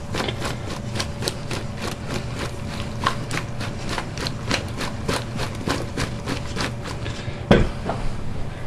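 Battered cauliflower florets being tossed in a stainless steel mixing bowl: a quick, regular run of knocks against the metal, about four a second, with a louder thump near the end.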